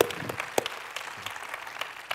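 Scattered audience applause, thin and uneven, with a couple of sharper claps near the start.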